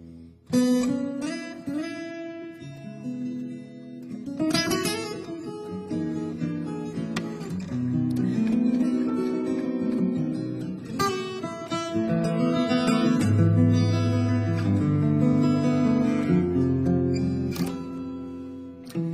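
Solo acoustic guitar played fingerstyle, with bass notes under a higher melody. Sharp strummed chords come in about half a second in, again a few seconds later, and once more midway through.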